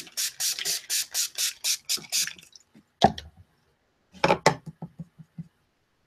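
Spray bottle misting water onto drying watercolor paper to re-wet it: a quick run of short spritzes, then another spritz about three seconds in and a few more with light knocks around four to five seconds in.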